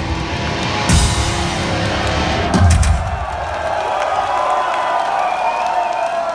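An industrial metal band plays live through a club PA, closing on heavy full-band hits with the bass drum. About three seconds in the music stops and the crowd cheers and shouts.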